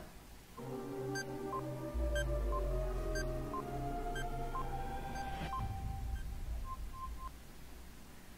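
Quiz-show countdown timer sound effect: short electronic beeps about once a second over a tense synthesized music bed, with a deep bass that comes in about two seconds in. It closes with three quick beeps just before the time runs out.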